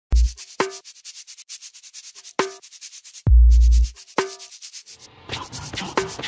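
Hip hop beat: long, deep booming bass hits about three seconds apart, sharper snare-like hits with a short ringing tone between them, and rapid steady hi-hat ticks. A rough, scratchy noise comes in near the end.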